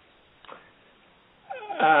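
A near-silent pause, then about one and a half seconds in a man's voice starts a drawn-out, hesitant "um" before answering.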